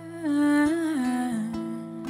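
A woman's voice humming a wordless melodic line that steps down in pitch, over sustained acoustic guitar notes.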